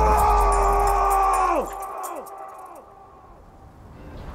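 A long, held yell-like cry over a deep bass drone; about a second and a half in it drops sharply in pitch and repeats as fading echoes.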